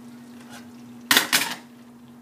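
Two quick, sharp clatters of a serving spoon and nonstick pan as the stew is handled at the stove, after a fainter knock, over a steady low hum.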